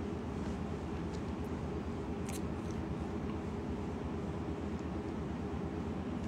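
Steady low hum of room background noise, with a faint click a little over two seconds in.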